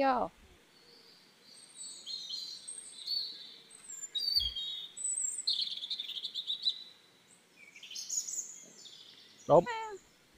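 Several birds chirping and singing, with many short, varied high calls, some gliding, and a fast trill in the middle.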